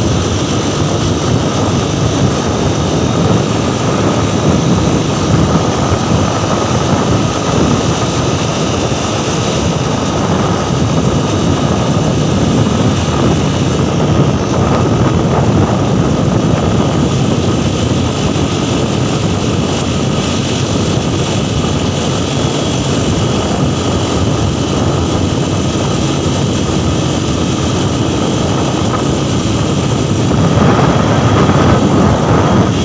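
Steady engine and road noise of an open motor vehicle travelling at speed, heard from on board, with a faint steady whine above the drone.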